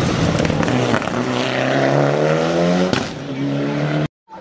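Rally car engine at full throttle as the car powers through a corner and away, its note climbing steadily. There is a sharp crack and a brief break in the note about three seconds in.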